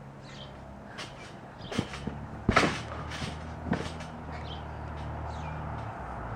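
Small birds chirping in short, repeated falling notes, over a low steady hum. A few sharp knocks cut in, the loudest about two and a half seconds in.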